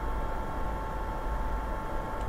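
Steady electrical hum and hiss of the recording setup, with a faint constant tone; no distinct events.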